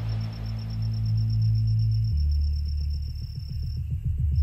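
Background electronic music: sustained low synth chords that shift about two seconds in, over a steady high tone, with a fast ticking beat coming in about halfway.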